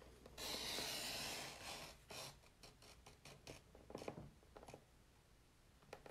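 Paper trimmer's cutter head drawn along its rail, slicing through cardstock with a steady scraping hiss for about a second and a half. A few small clicks and rubs of the cutter and paper follow.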